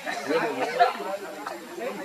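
Indistinct chatter of several people talking at once.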